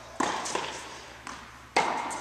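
Tennis racket strokes on a high-density foam training ball: two sharp hits, the louder one near the end, each echoing in a large indoor hall.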